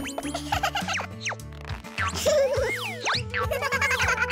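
Children's cartoon background music with springy boing sound effects layered over it. A whistle-like glide rises and then falls a little over two seconds in.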